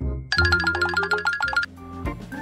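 Background music: a quick run of rapidly repeated bright notes that stops abruptly about one and a half seconds in.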